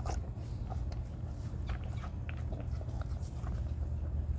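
A calf slurping blueberry water from a plastic cup held to its mouth: a run of short, irregular wet smacks and sucks.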